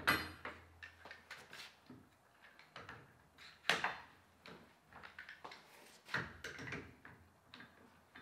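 One-handed bar clamps being set and tightened onto aluminium rails on a plywood table: sharp clacks of clamp and metal against the wood near the start, at about four seconds and again around six seconds, with lighter clicks between.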